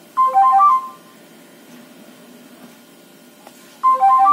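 Ringtone preview playing from a Nokia 3110 classic's loudspeaker: a short melody of high, clear notes lasting under a second, then a pause of about three seconds before another phrase begins near the end.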